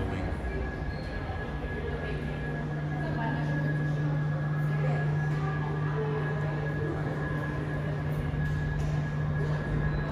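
A steady low hum sets in about a second and a half in and holds, over a faint murmur of visitors' voices and a thin steady high tone.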